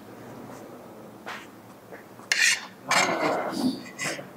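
A metal spoon scraping and scooping fried rice on a plate, in two loud, rough scrapes about two and a half and three seconds in.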